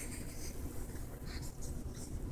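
Scratchy rubbing and bumping noise right against a phone's microphone, a few short scrapes over a low handling rumble.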